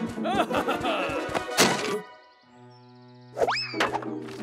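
Cartoon background music with comic sound effects: springy sliding tones and a sharp thunk about one and a half seconds in. The music cuts out at about two seconds, leaving a quiet held low note, and a quick rising whistle-like glide comes near the end.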